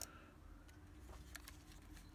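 Near silence with a few faint clicks from the Nikomat FTN film camera being handled as a thumb moves onto its self-timer lever.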